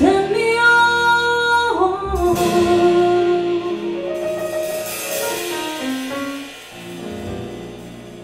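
Live jazz band ending a song: a female vocalist holds long final notes over piano, double bass and drums, the notes stepping down, with a cymbal swell in the middle. The closing chord then dies away near the end.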